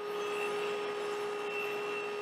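SawStop table saw running at speed with a steady hum while a maple strip is fed along the fence for a rip cut.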